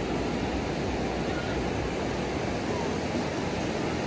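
Ocean surf breaking on a sandy beach, a steady wash of noise with no distinct events.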